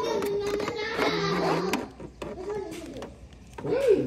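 A child's voice making drawn-out wordless vocal sounds for about the first two seconds, then quieter, with short clicks and taps as plastic wrestling figures are handled in a toy ring.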